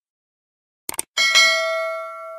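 Subscribe-animation sound effect: a quick double mouse click about a second in, then straight after it a bright notification-bell ding that rings out and fades.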